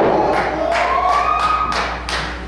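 Sharp thuds or claps, several in a row a few tenths of a second apart, in a wrestling ring's surroundings, with a drawn-out yell that rises and then holds through the middle.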